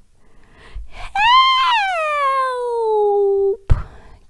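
A woman's voice crying out in one long, high wail that starts about a second in and falls steadily in pitch before breaking off. It is the narrator acting the witch's drawn-out cry of "Help!".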